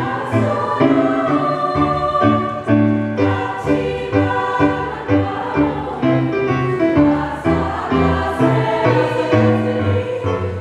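Small choir singing a traditional Japanese song in unison and harmony, with electronic keyboard accompaniment holding chords underneath.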